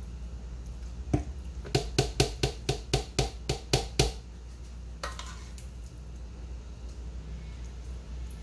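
A spoon knocked repeatedly against the rim of a plastic blender cup to shake cooked rice off it, about a dozen sharp taps at roughly four a second, each with a brief ring.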